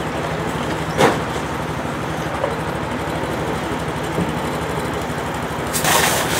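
An engine running steadily at constant speed, with a low, evenly pulsing rumble. A single sharp knock comes about a second in, and a burst of hissing and crackling starts near the end.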